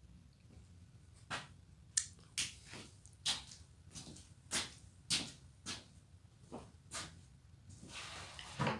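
Footsteps on a workshop floor, about a dozen uneven steps at roughly two a second, starting a little over a second in.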